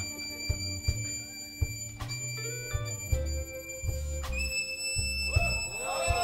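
Live blues band playing softly: bass notes and scattered drum hits under a harmonica holding long, steady high notes.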